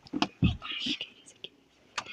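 A person whispering, with a few short clicks in the first half second, then quiet for the last half second or so.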